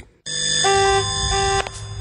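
A held electronic chord of several steady tones, about a second and a half long, coming in after a brief moment of silence; some of its notes enter and drop out partway through. It is the musical sting at the start of a television advertisement.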